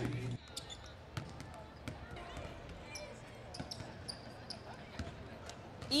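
Basketballs bouncing on a hardwood court during a team practice: scattered single thuds at an uneven pace in a large arena, with faint voices in the background.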